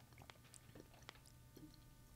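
Faint chewing in near silence, a scatter of small soft clicks: tapioca pearls being chewed after a sip of boba milk tea.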